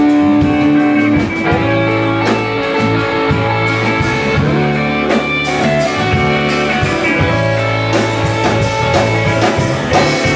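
Live rock band playing an instrumental passage, electric guitars over a steady beat, with no vocals.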